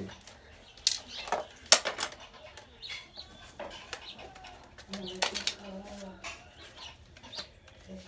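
Split carrizo cane strips being worked through a basket's weave by hand and with a knife: a dry rustling of cane with several sharp clicks and snaps, the loudest about a second and two seconds in.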